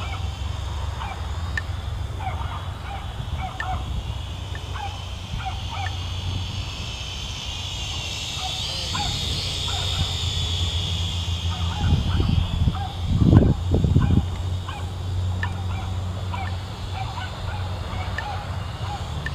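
A quadcopter drone's propellers whine, swelling as it passes overhead about halfway through and fading again. Short animal calls repeat throughout, and two low rumbles hit the microphone near the end.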